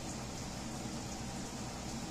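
Steady low hiss of room noise, even throughout, with no distinct strokes or knocks.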